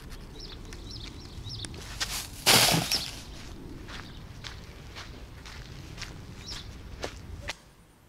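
Footsteps of someone walking outdoors, about two steps a second, with small birds chirping now and then. A brief loud burst of noise comes about two and a half seconds in, and near the end the outdoor sound cuts off to quiet room tone.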